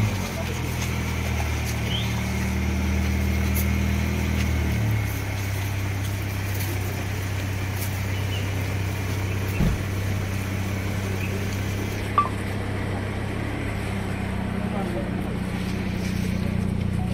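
Mini Cooper's engine idling steadily just after being started, its low hum stepping down about five seconds in, with people talking around it. A single thump about ten seconds in.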